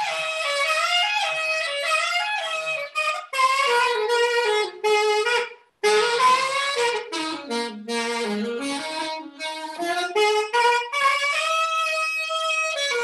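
Unaccompanied alto saxophone playing a freely phrased melodic solo, its phrases broken by two short breaths, dipping into a low passage about eight seconds in before climbing back up.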